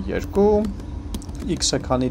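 Computer keyboard being typed on: quick, irregular key clicks as a line of code is entered.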